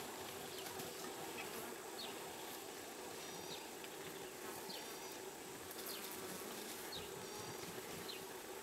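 Flies buzzing steadily, with short high chirps scattered through.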